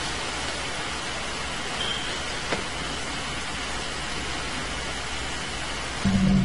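Steady, even hiss of a home camcorder's recording noise, with one faint click about two and a half seconds in.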